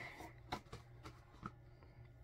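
Quiet room tone with a steady low hum, broken by two or three faint, soft clicks of things being handled.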